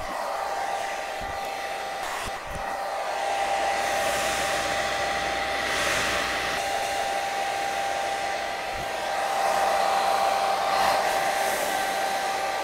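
Handheld hair dryer running on low speed and low heat: a steady whine over the rush of air, which swells and fades a little as the dryer is moved.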